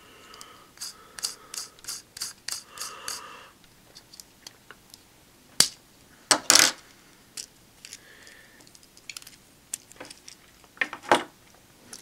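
Mad Doctor plastic toy tire on a figure's shoulder being spun by hand: a quick run of small plastic clicks and ticks with a faint whir, then scattered clicks of handling, with two louder clicks a little past the middle.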